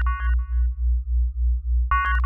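Electronic logo jingle: a synthesizer bass pulsing about four times a second under a bright stacked chord that sounds at the start and again near the end.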